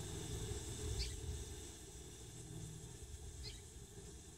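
Faint outdoor garden background: a low, steady rumble with two brief, faint high chirps, one about a second in and one near the end.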